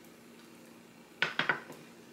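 A metal utensil clicking against a dish, three quick clinks a little over a second in, while chopped bell pepper is spooned onto a lettuce wrap.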